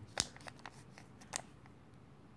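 Small paper envelope being handled, with a few short crackles and clicks, the loudest a moment in and another just over a second later.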